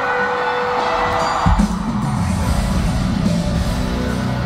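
Live rock band with the crowd cheering. About a second and a half in, the full band comes in loud, with guitars, bass and drums.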